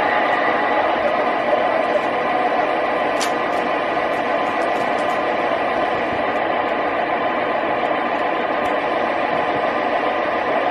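Lionel 4850TM Trackmobile O gauge model running along three-rail track, a steady mechanical running noise, with a few light clicks about three to five seconds in.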